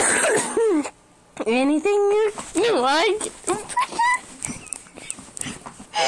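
Wordless voice sounds: several short cries with sliding, swooping pitch, as in a scuffle. In the last two seconds, quick knocks and rubbing from the recording phone being jostled and pressed against clothing and skin.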